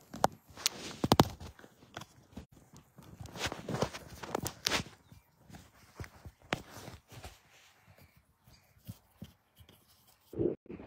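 Handling noise from a camera being lowered and repositioned: irregular clicks, knocks and rustles close to the microphone, loudest about a second in.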